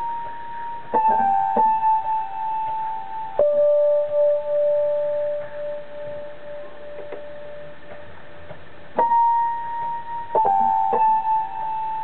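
Technics PX5 digital piano in its electric piano voice with built-in chorus, playing a slow melody in B minor. Single notes and small chords are struck a second or a few seconds apart and left to ring, one note held for about five seconds.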